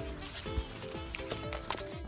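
Background music with a steady beat: a low kick drum about twice a second under sustained chords.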